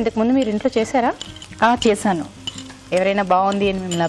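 Chopped onions frying in oil in a pan, with a woman talking over them.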